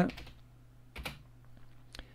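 A few keystrokes on a computer keyboard, spaced out: one clear click about halfway through and another near the end.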